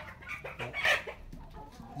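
Domestic chickens clucking.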